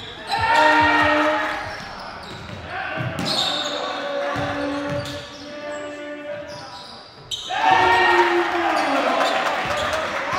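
Game sound from a basketball gym: a basketball bouncing on the hardwood floor as it is dribbled, with players' shouts and calls about a second in and again near the end.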